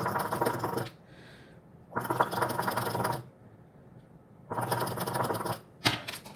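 Shisha (hookah) water bubbling as smoke is drawn through the hose: three pulls of about a second each, roughly two seconds apart, with a short fourth burst near the end.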